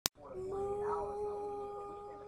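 A girl's solo singing voice, unaccompanied, holding one long, steady note, after a short click at the very start.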